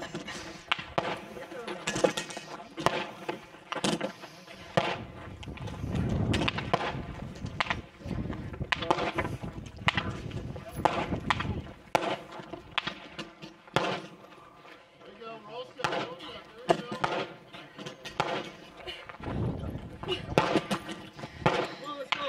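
Athletes breathing hard from fatigue, with faint voices in the background and scattered irregular knocks and clanks.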